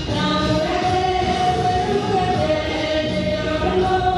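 A group of voices singing a Nyishi folk song together, in long held notes that slide between pitches.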